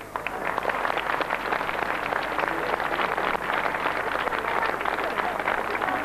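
A large crowd applauding, a dense, steady clapping that holds at an even level throughout.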